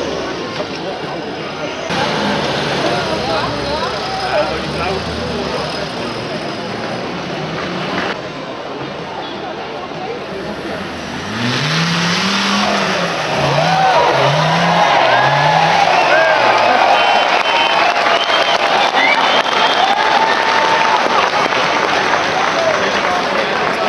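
Off-road trials 4x4's engine revving in a series of rises and falls, about four blips of the throttle a second apart, as it climbs over logs and a steep dirt mound. Voices can be heard in the background.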